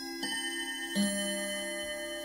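Short chime-like musical jingle: sustained ringing notes, with a new note struck about a quarter second in and a lower one about a second in.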